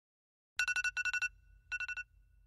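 Smartphone alarm going off: fast electronic beeping in short bursts of about four beeps, starting about half a second in.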